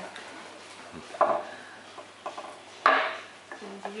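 Two short clatters of small kitchen items knocked on a wooden worktable, about a second in and again near three seconds, the second the louder.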